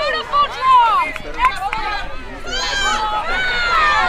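Several voices shouting and calling out on a lacrosse field during play, overlapping, with a loud call about three-quarters of a second in and more calling toward the end.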